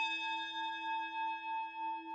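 A single struck bell tone ringing on and slowly fading, several steady pitches at once with a gentle wobble in its loudness.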